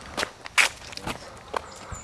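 Footsteps on a dirt hillside trail through brush, about two steps a second.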